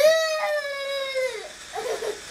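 A child's long, loud held yell: one sustained note for about a second and a half that falls away at the end.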